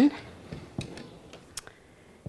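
A few faint, scattered taps and clicks of hands handling small wooden pot holder looms strung with t-shirt loops.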